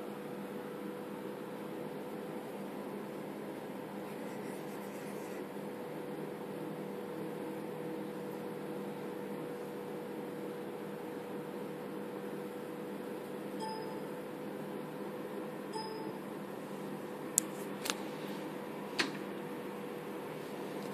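Steady low machine hum with a faint constant tone, then three sharp clicks close together in the last few seconds.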